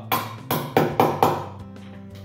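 Hammer tapping a wheel balancing weight onto the rim of a vintage wire-spoke wheel: five sharp strikes in quick succession within the first second and a half.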